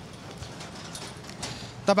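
Steady outdoor background hiss with a few faint knocks, between stretches of speech; a man's voice begins right at the end.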